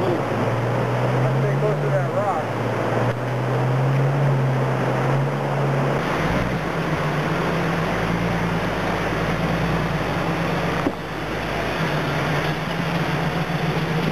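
Jeep Scrambler engine running as it works through a rushing creek, its pitch rising briefly about two seconds in, over the steady noise of the water. About six seconds in the sound changes to a closer, deeper engine running at low speed, with the creek still rushing behind it.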